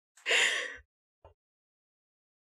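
A person's short audible breath, a gasp or sigh lasting about half a second, followed by a faint click about a second in.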